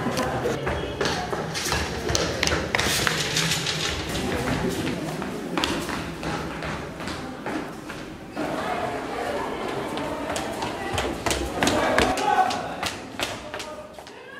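Hurried footsteps running on a hard corridor floor, a stream of irregular thuds, with indistinct voices in the background.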